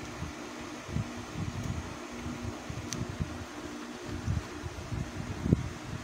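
Steady, fan-like background whir with an uneven low rumble and a faint steady hum, with one light knock near the end. The soldering makes no distinct sound of its own.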